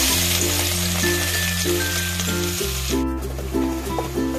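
Chopped onion sizzling as it hits hot oil in an aluminium kadai. The sizzle drops away sharply about three seconds in. Background music with a steady bass line plays throughout.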